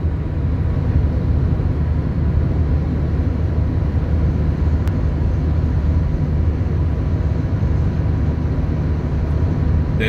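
Steady low rumble of a car cruising on an expressway at about 100 km/h, with road and tyre noise heard from inside the cabin.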